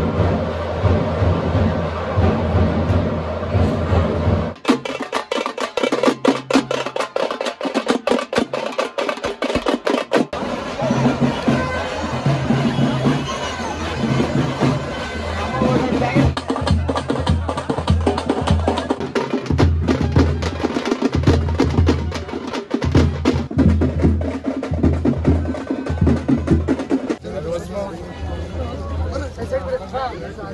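Fast, dense drumming with crowd voices throughout. A rapid run of drum strikes starts about four seconds in and lasts about six seconds, then gives way to steadier drumming mixed with chatter.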